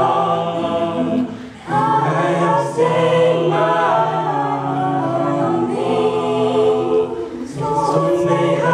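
Mixed-voice a cappella group singing a slow hymn arrangement in close harmony, holding chords, with two brief breaks between phrases, about a second and a half in and near the end.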